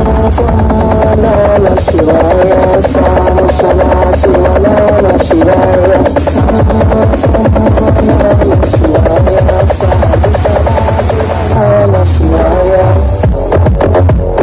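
Electronic dance music played very loud through a large carnival sound system, with a heavy, steady bass beat and a wavering synth melody over it.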